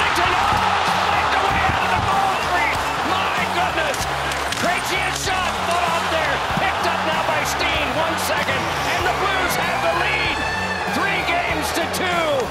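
Ice hockey arena crowd: a dense, loud din of thousands of fans shouting and whistling, with sharp clacks of sticks, skates and puck against the boards.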